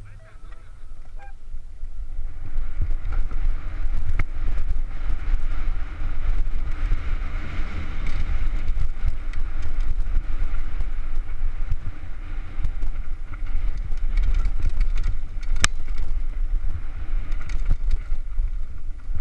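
Wind buffeting a helmet-mounted action camera while a downhill mountain bike rattles over a rough, rocky dirt trail at speed. The noise builds over the first two or three seconds as the bike picks up speed, with sharp knocks from wheel impacts throughout.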